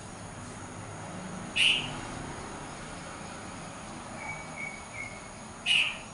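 A bird calling: two short, sharp calls about four seconds apart, with three faint short whistles at one pitch in between.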